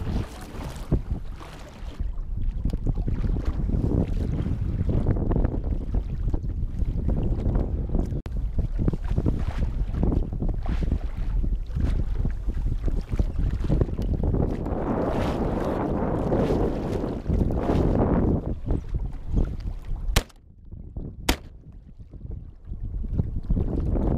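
Wind buffeting the microphone of a camera on a small boat at sea, a steady low rumble with choppy water against the hull. About twenty seconds in the wind noise drops away and two sharp clicks sound.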